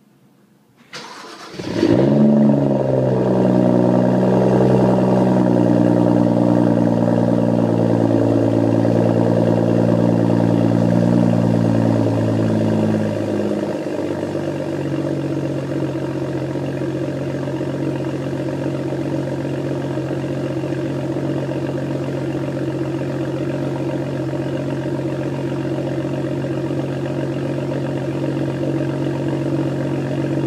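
BMW 135i's turbocharged inline-six cold-starting through a REMUS quad-tip exhaust: a brief crank about a second in, a flare as it catches, then a steady raised cold idle. About 13 seconds in, the idle steps down to a lower, steady note.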